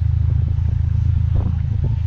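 Honda Integra Type R's four-cylinder engine idling steadily close by, a low rumble, while gusty wind buffets the microphone.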